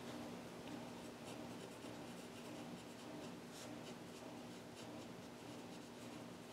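Faint scratching of a pen writing on paper in short strokes, over a steady low hum.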